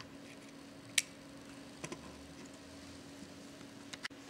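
A sharp metallic click about a second in, then a couple of faint ticks, as a crocodile clip is handled and clipped onto a resistor's terminal; a faint steady hum runs underneath.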